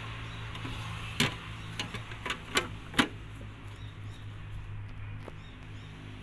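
A few sharp knocks and clicks from a painted sheet-metal cowl cover panel being handled and set back in place over the wiper linkage, the loudest about a second in and at three seconds, over a steady low hum.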